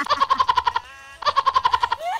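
High-pitched, rapid laughter in two runs of quick, even 'ha' pulses at one pitch, with a short break between them.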